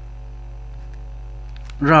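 Steady low electrical mains hum on the recording during a pause in speech; a voice starts again near the end.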